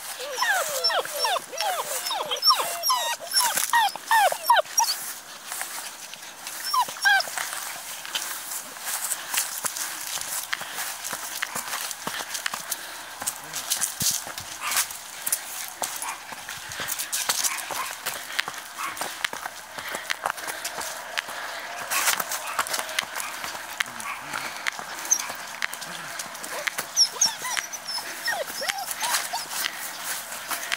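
Bohemian Shepherd (Chodský pes) puppies whining and yelping in a quick run of short, high cries over the first few seconds, with a few more later. In between come the scuffling and rustling of small dogs moving through grass.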